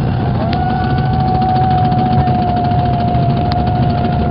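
Hundreds of cajones played together, a dense continuous drumming with a deep rumbling low end. A single steady high tone is held over the drumming.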